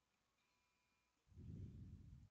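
Near silence: microphone room tone, with a short, low, muffled rumble in the second half.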